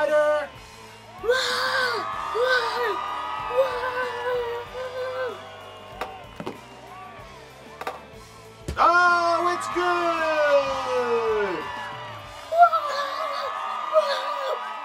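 Upbeat background music under a boy's wordless excited yells and whoops. About six and a half seconds in there is a sharp click, and near the middle a long drawn-out yell slides steadily down in pitch.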